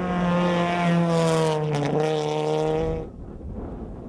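Rally car engine running hard at high revs with a steady, high engine note. The note dips slightly in pitch about two seconds in and cuts off suddenly about three seconds in.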